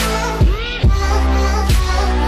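Background music from an electronic remix: deep bass and drum hits under sustained synth chords.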